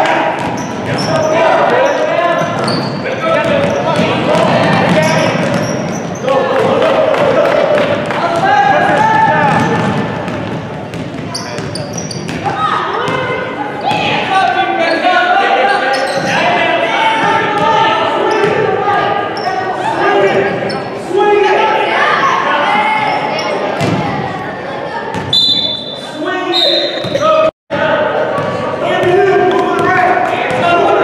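A basketball dribbling and bouncing on a hardwood gym floor during a youth game, with voices of coaches, players and spectators calling out. Everything echoes in the large hall, and the sound cuts out for a moment near the end.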